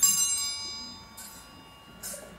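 Hand-held altar bells rung for the blessing with the monstrance: a bright, many-toned jingle at the start that rings and fades over about a second, then another shake about a second later.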